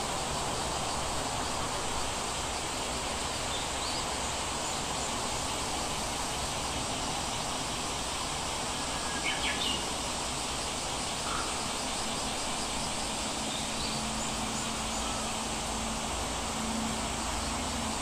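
Steady background hiss, with a few faint short chirps.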